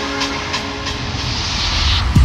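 A swelling hiss of noise with a low rumble and a few held tones underneath, growing louder toward the end, as a passage in an electronic DJ mix.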